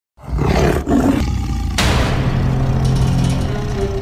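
Tiger roar sound effect for a logo sting: short growling bursts, then a longer, louder roar from just under two seconds in, with a few music notes coming in near the end.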